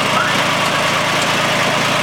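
Yanmar compact tractor's diesel engine running steadily at low speed.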